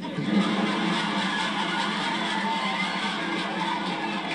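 Studio audience laughing and applauding, a steady wash of clapping that holds its level throughout.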